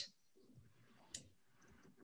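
Near silence with a single brief click a little past a second in.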